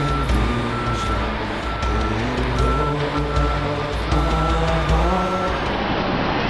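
An electronic beep sounding about once a second, stopping near the end, over music with a low, shifting bass line.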